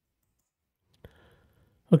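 A single short click about halfway through, from the computer input used to zoom the page; otherwise near silence until a man starts speaking at the very end.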